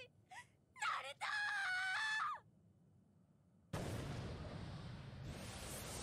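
An anime character's voice crying out in a strained, drawn-out groan. After a short pause it gives way to a sudden rushing noise that sets in abruptly and slowly fades.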